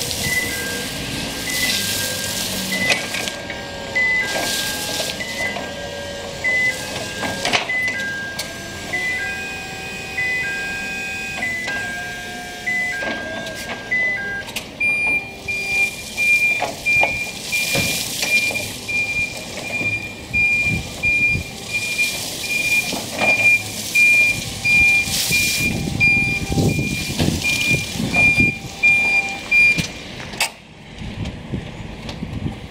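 Small Toyota 900 kg forklift in motion, its warning beeper sounding over the machine's running noise: a repeated two-pitch beep for the first half, then a steadier single high tone through the second half, with irregular bursts of noise every couple of seconds.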